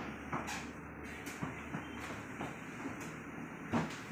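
PVC accordion folding door being slid open, its panels clicking and knocking as they fold together, with a louder knock near the end.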